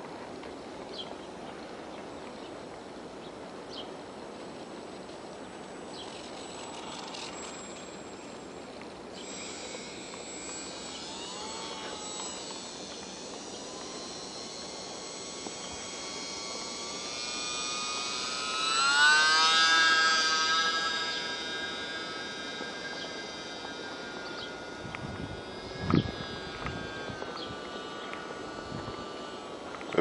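Small brushless electric motor and propeller of a UMX J-3 Cub radio-controlled plane whining in flight. It is faint at first, then rises in pitch and grows loud about two-thirds of the way through as it passes close, before settling to a steady tone. A single brief thump near the end.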